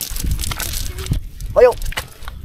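Nylon cast net rustling and crinkling as hands pick through its mesh, with a short high-pitched yelp-like call about one and a half seconds in.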